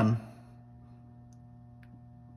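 Steady low electrical hum in a machine shop, with one faint click near the end.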